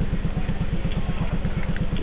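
A steady low pulsing buzz, about a dozen pulses a second, running under a faint hall ambience.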